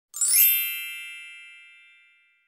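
A bright chime sound effect: a quick upward sparkle that settles into one ringing cluster of bell-like tones and fades away over about two seconds.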